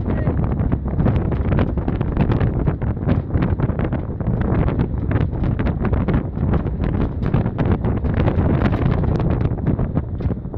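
Wind buffeting the microphone in the open bed of a moving pickup truck: a steady, heavy low rumble full of rapid crackles.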